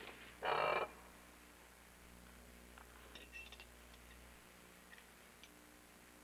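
The metal arm of an articulated lamp creaks once as it is pulled into position, a loud half-second sound just under a second in. A few faint light clicks follow about three seconds in, over quiet room tone.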